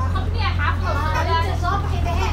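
Passengers' voices talking, fairly high-pitched, over the steady low hum of a bus engine, heard from inside the bus.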